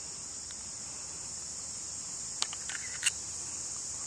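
A golf club clicking against the ball on a short chip shot about two and a half seconds in, with a second, fainter click about half a second later, over a steady high chirring of insects.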